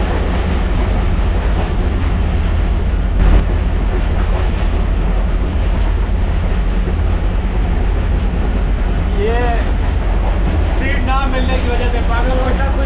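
Pakistan Railways passenger train in motion, heard inside the coach's vestibule: a steady, loud rumble of wheels on the rails, with a brief louder clatter about three seconds in. A man's voice comes in near the end.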